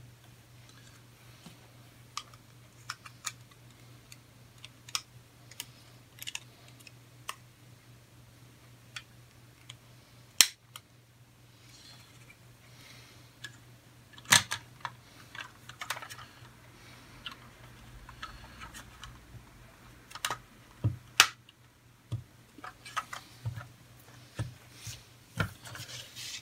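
Snap-together plastic model-kit parts being handled and pressed onto a plastic car body: scattered small clicks and taps, with a few sharper snaps about ten, fourteen and twenty-one seconds in as the windscreen and roof pieces are fitted.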